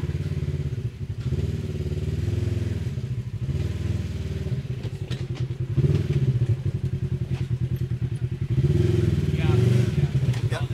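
Sport side-by-side UTV engine running at low speed, its pitch rising and falling in repeated throttle blips as it crawls over rock ledges, with louder surges near the middle and end.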